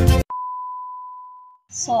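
Background music cuts off abruptly, then a single pure high beep tone starts with a click and fades slowly away over about a second and a half. A voice starts speaking near the end.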